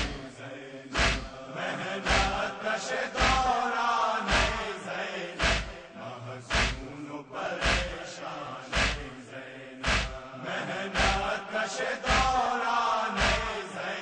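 Several male voices chanting a noha lament, kept in time by a sharp thud about once a second from rhythmic chest-beating (matam).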